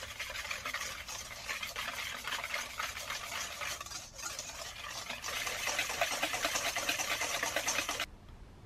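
Wire balloon whisk beating eggs and brown sugar in a stainless steel bowl: fast, continuous scraping and clicking strokes of the wires against the metal. There is a brief break about four seconds in, and the beating is louder from about five seconds on.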